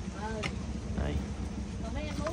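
A steady low motor hum, with one small click about half a second in.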